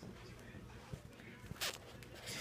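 Faint handling noise of a hand-held phone camera being moved, with a few small clicks and one short rustle about one and a half seconds in.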